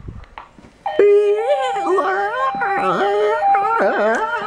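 Fire alarm speaker sounding a steady alert tone in repeated short stretches during a fire drill, with a man singing along without words, his voice sliding up and down around the tone's pitch. Both start suddenly about a second in and are loud.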